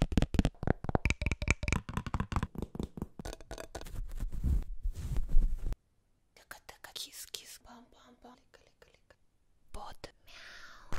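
Close-microphone ASMR trigger sounds: fast fingernail tapping and clicking on a plastic card for about six seconds, stopping suddenly, then fainter, softer rustling and brushing sounds.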